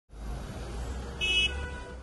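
City street traffic: a steady low rumble of vehicles, with a short high-pitched horn toot a little over a second in.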